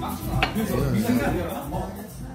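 Clatter of tableware at a crowded pub table: a sharp clink of dishes about half a second in, over background voices that fade towards the end.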